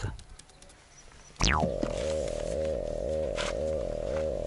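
Quiet for about a second and a half, then a sudden downward swoosh and a steady, low, droning background music track that starts up and carries on with an even, repeating pulse.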